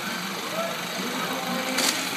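Live fish splashing in shallow market tanks, a steady watery hiss with one sharper splash near the end.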